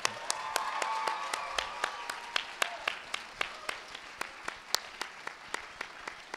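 Audience applause, fullest in the first two seconds and then thinning, with sharp individual claps from close by standing out above it.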